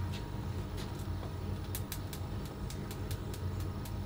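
A plastic honey squeeze bottle being handled and squeezed upside down as honey pours out, giving a run of faint, sharp clicks several times a second from about two seconds in. Underneath is a steady low hum from the small kitchen room.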